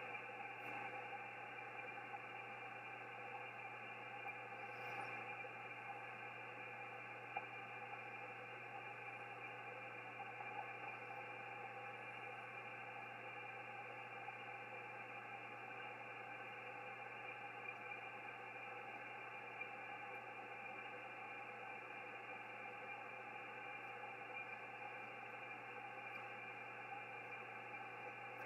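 Faint, steady hiss of an Icom IC-7610 HF receiver tuned to 18.110 MHz upper sideband on the 17-metre band, with no station coming through: the band has no propagation to the spotted station.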